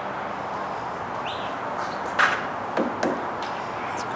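Steady background noise with a few short, sharp knocks or clicks in the second half, the first of them the loudest.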